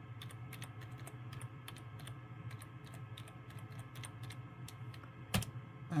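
Typing on a computer keyboard: a quick run of key clicks as a word is typed, ending with one louder keystroke, the Enter key, about five seconds in.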